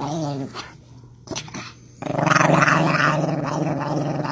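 Chihuahua growling in low, pulsing grumbles. It stops about half a second in and starts again, louder, about two seconds in.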